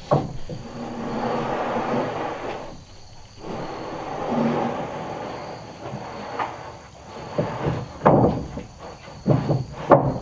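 One-inch wooden decking planks sliding and scraping across wooden porch floor joists, then several sharp wooden knocks near the end as a board is set down into place.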